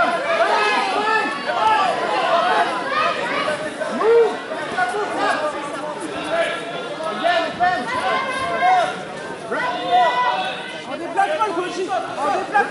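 Many voices talking over one another at once: spectator chatter, steady throughout, with no single voice standing out clearly.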